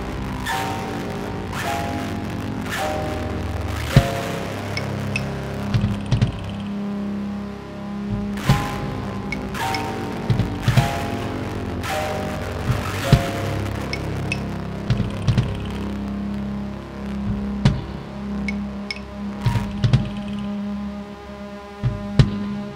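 Instrumental section of a weird-pop song with no vocals. A short descending melodic figure repeats over a steady low drone, with scattered percussive hits.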